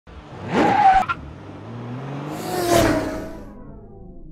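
A car engine revs up briefly and cuts off sharply about a second in. Then a car passes by, its engine note falling as it goes, with a rush of wind and tyre noise that fades away.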